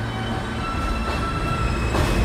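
R160 subway train at a platform: a steady electrical whine from its equipment over a low rumble, growing louder near the end.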